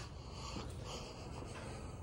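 Soft breaths close to the microphone, a puff near the start and another about a second in, over a steady low rumble.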